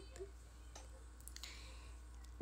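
A few faint clicks in a quiet room, after the tail of a softly spoken word.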